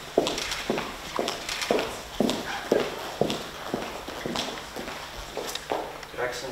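Footsteps on a hard marble floor: sharp heel clicks about two a second, thinning out and stopping toward the end as the walkers come to a halt.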